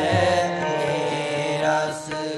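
Sikh kirtan: a male voice singing a long, wavering line over steady harmonium drones, with low tabla strokes underneath.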